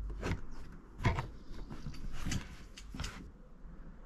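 Hatch lid of a kayak's front storage hatch being pressed and seated onto its plastic rim by hand: four short knocks and clicks about a second apart, with faint handling noise between them.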